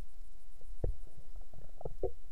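Muffled underwater rumble picked up by a submerged camera, with a few dull knocks, one about a second in and a cluster near the end.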